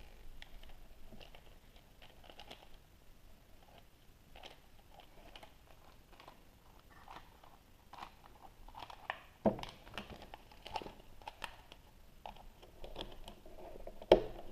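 Light scattered clicks and taps of a hard plastic toy horse figure being turned over and handled, with one sharper knock about nine and a half seconds in.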